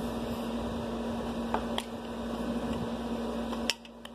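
Steady electrical hum in a small room, with a few light clicks from a plastic eyeshadow compact and brush being handled. The loudest click comes near the end, after which the sound dips briefly.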